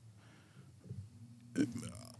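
A pause between words: faint room tone, then a short, low voice sound from a person near the end.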